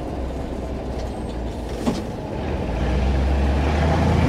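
MAN KAT off-road truck's diesel engine, heard from inside the cab, running at low speed and then growing louder about halfway through as the truck pulls away.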